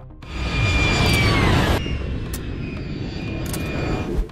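Field audio of a passing armoured military vehicle: engine noise with a high whine that falls in pitch, cut off suddenly a little under two seconds in. A steadier, quieter engine drone with a thin high tone follows.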